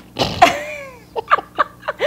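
Women laughing: a high laugh that slides down in pitch, followed by a few short bursts of laughter.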